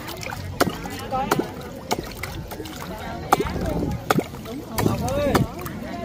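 Pond water splashing and sloshing in a string of short, sharp splashes, with people's voices talking nearby.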